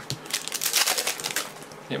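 Foil wrapper of a Panini Prizm trading-card pack crinkling in the hands, a rapid crackle lasting about a second.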